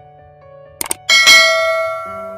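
Two quick mouse-click sound effects, then a bright notification-bell ding that rings and slowly fades, over soft background music: the sound effect of a subscribe-button and bell-icon animation.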